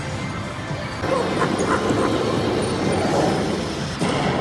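Lock It Link Eureka Reel Blast slot machine playing its bonus-trigger music and sound effects, growing louder about a second in, as the dynamite bonus feature starts.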